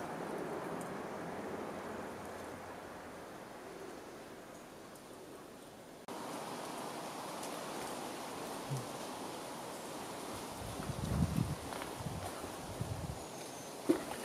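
Outdoor ambience: a steady, even hiss of background noise that dips and comes back abruptly about six seconds in, with a few low thumps and rumbles on the microphone a couple of seconds before the end.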